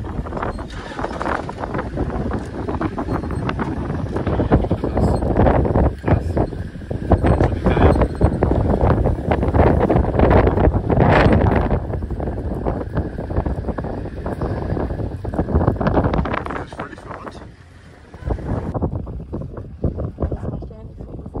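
Wind buffeting the microphone in irregular gusts, a loud low rumble that eases briefly near the end.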